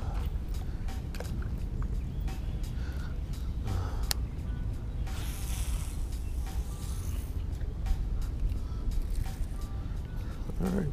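Baitcasting reel being cranked on a retrieve, with scattered small ticks from the reel and a sharper click about four seconds in, over a steady low rumble of wind on the microphone.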